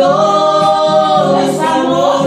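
A man and a woman singing a Spanish love song together, with a long held note that slides down in pitch about a second and a half in, followed by a shorter note.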